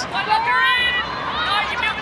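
Broadcast commentary: a voice speaking over background crowd noise.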